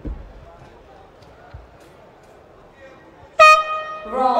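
A boxing ring's round-start horn sounds about three and a half seconds in, a loud, steady electronic tone lasting about half a second that signals the start of round one. Before it there is low arena noise and a thump at the very start.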